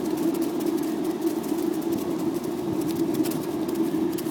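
Skateboard wheels rolling steadily over pavement while being towed along: a continuous rumble with many small scattered ticks over it.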